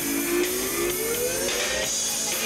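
Live rock band playing an instrumental passage, with sustained notes sliding slowly upward in pitch over the two seconds.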